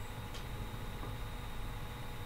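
Low steady background hum and hiss of room tone through the call microphones, with one faint click about a third of a second in.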